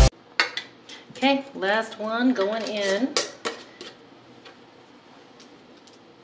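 Metal-on-glass clinks and taps as a canning lid and screw band are set and twisted onto a glass mason jar, with kitchen utensils clattering; the clinks die away after about four seconds.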